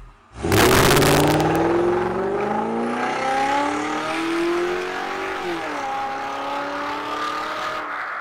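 Car engine revving hard while the car drifts on loose dirt, with tyre and skid noise. It starts abruptly about half a second in, climbs in pitch over several seconds, and drops sharply once around five and a half seconds in.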